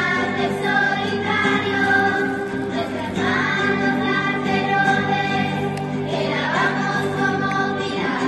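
Children's choir singing a Spanish Christmas carol (villancico), accompanied by acoustic guitars.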